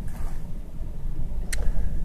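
A steady low rumble, with a single sharp click about one and a half seconds in.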